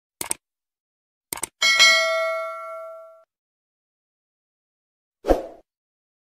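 Subscribe-button animation sound effect: a quick double mouse click, another click about a second later, then a bright bell ding that rings out for about a second and a half. A short pop near the end.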